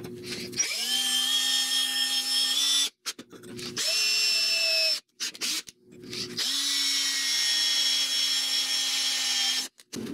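A DeWalt cordless drill boring a hole through a small metal angle bracket. It runs in three bursts, the first and last a few seconds long and the middle one about a second, with short stops between. Each burst spins up into a steady whine.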